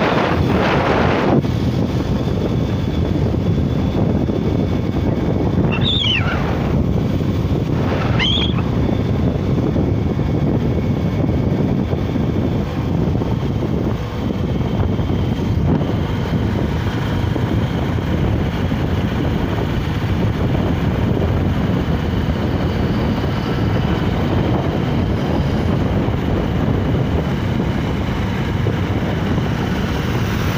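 Wind buffeting the microphone of a moving motorcycle, a steady rushing noise with road noise underneath. Two short high chirps cut through about six and eight seconds in.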